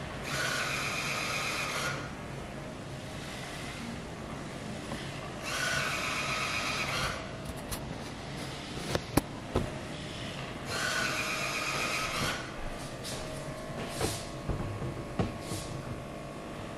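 iRobot Braava Jet mopping robot running across a hard floor: a steady low motor hum, broken by three buzzing bursts about five seconds apart, each lasting about a second and a half. A few light clicks come in the second half.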